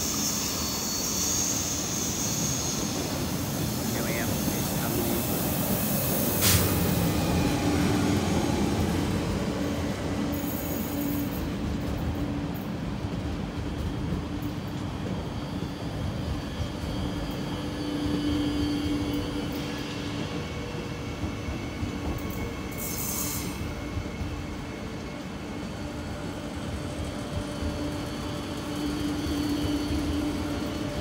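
A TER Hauts-de-France double-deck passenger train moving slowly past on the adjacent track, with a steady running hum and rumble and a couple of brief hissing noises.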